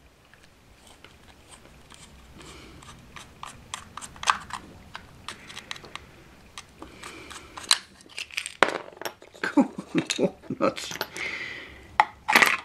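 Clicks and cracks of plastic as a screwdriver prises a glued-on plastic tender body off its OO gauge model chassis, the glue joint giving way. A few clicks early on, a run about four seconds in, then a denser flurry of louder cracks and scrapes in the second half.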